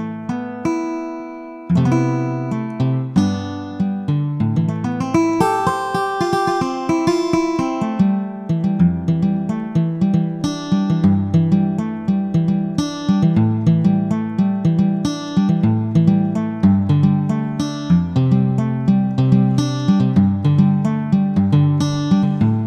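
GarageBand for iPad's sampled acoustic guitar instrument played from the on-screen keyboard: plucked notes and chords, with no slides or bends. A chord rings and fades at first, then a continuous run of quick notes and chords starts about two seconds in.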